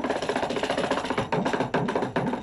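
Kanjira, the small South Indian frame drum, played in a fast, dense run of hand strokes.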